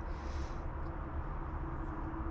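Steady low background rumble with a faint steady hum over it.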